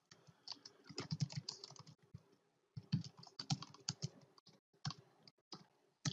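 Typing on a computer keyboard: quick runs of faint key clicks, with a short pause about two seconds in.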